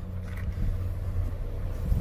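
Low, steady rumble of an idling vehicle engine close by, with a faint steady hum above it.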